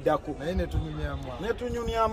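A man talking, with a few dull low thumps underneath.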